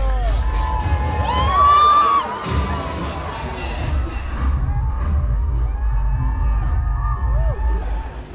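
Crowd cheering and screaming, with many high shouts and squeals rising and falling, loudest about one and a half seconds in. A heavy low rumble runs underneath, wind on the microphone of the moving open car.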